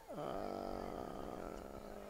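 A man's voice holding a long, level "uhhh" of hesitation for about a second and a half.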